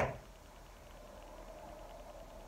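Quiet room tone: a faint, steady hiss with no distinct events, just after the end of a spoken word.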